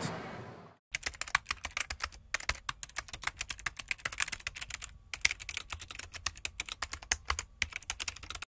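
Typing sound effect: rapid, irregular keystroke clicks starting about a second in, with two brief pauses, as on-screen text is typed out letter by letter.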